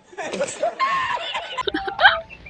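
A man laughing hard in breathy, broken fits, from an edited-in laughing-man meme clip.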